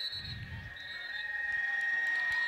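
A steady high-pitched whine that slowly grows louder, typical of public-address feedback from the commentator's microphone through loudspeakers, with a brief low rumble just after the start.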